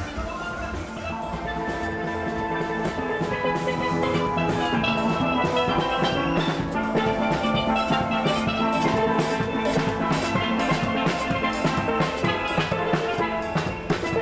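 A steel band playing a lively tune: steelpans carry the melody and chords over a steady beat of drums and percussion. The music grows louder over the first few seconds, then holds.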